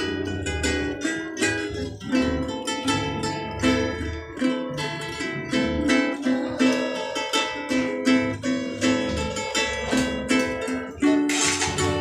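A ukulele and a steel-string acoustic guitar strummed together in a steady rhythm, an instrumental stretch of a song with no singing. The playing gets louder near the end.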